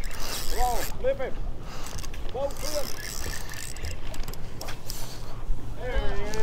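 Spinning reel being cranked, a mechanical whirring in spells over steady wind noise on the microphone.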